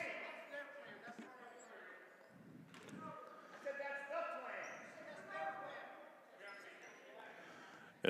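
Faint voices echoing in a gymnasium, with a single thump about three seconds in.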